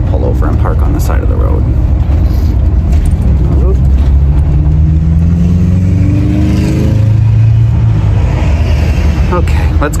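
Motorhome engine and road rumble heard from inside the cab while driving. The engine note rises about halfway through, then settles to a lower steady pitch.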